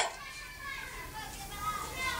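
Quiet background chatter of children and adults, faint voices with no single clear speaker.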